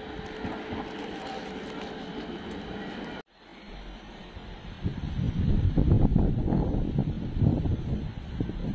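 Steady outdoor street background noise, cut off suddenly about three seconds in. Then wind buffets the microphone in low, gusty rumbles that grow loud from about halfway on.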